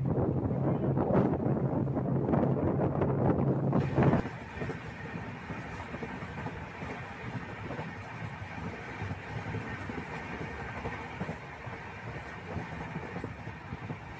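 A train's running noise heard from inside a moving carriage: a loud, dense rumble with a steady low hum that drops suddenly about four seconds in to a quieter, even rumble.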